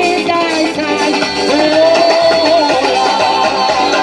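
Live band music from a stage PA, keyboard, drums and guitar playing, with voices singing over it.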